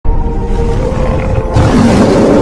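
Music with steady held tones, then a loud tiger roar sound effect comes in over it about one and a half seconds in.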